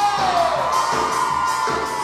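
Live Tierra Caliente dance music with a steady beat. A long held note slides downward in the first second, and a crowd cheers over the music.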